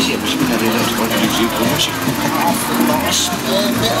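A large farm tractor's diesel engine running steadily at low speed close by, a low even hum, with people's voices over it.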